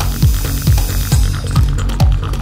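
Mid-1990s Goa trance: a four-on-the-floor kick drum with a falling pitch, about two kicks a second, over a rolling electronic bassline and synths, with a hissing noise sweep swelling through the first second or so.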